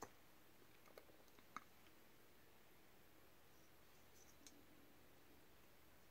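Near silence with a few faint, brief clicks.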